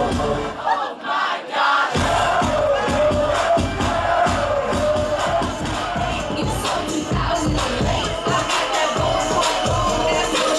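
Dance music played loud over a DJ sound system with a crowd of young people shouting and cheering over it. The bass drops out for about the first two seconds, then the beat comes back in.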